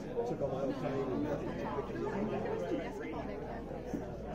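Overlapping chatter of many people talking at once in a large room, with no single voice standing out.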